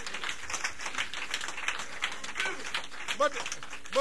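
Audience applauding, a dense patter of hand claps with a few scattered voices among it. A man's voice starts speaking near the end.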